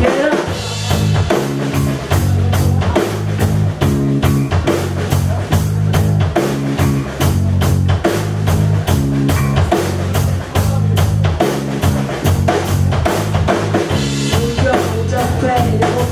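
Live rock band playing an instrumental passage: a drum kit keeping a steady, fast beat under electric bass and two electric guitars.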